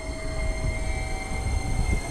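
JR Kyushu 885 series electric limited-express train running slowly into a station platform, a steady low rumble.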